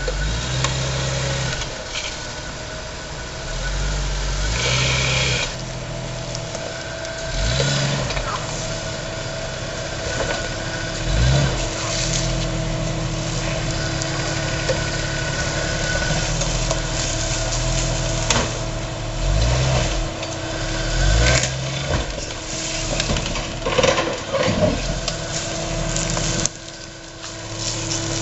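Jeep Cherokee XJ's 4.0 L straight-six engine running at low revs while rock crawling, with several blips of throttle that rise and fall in pitch. Now and then there are sharp knocks.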